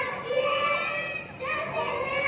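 Several young children's voices in unison through a stage microphone and hall speakers, reciting a rhyme in drawn-out phrases.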